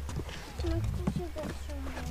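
Footsteps knocking on the wooden planks of a boardwalk, with faint voices in the background.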